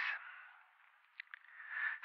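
A pause in a man's speech: the end of a word, then near silence with two faint clicks a little over a second in, and a faint breath near the end.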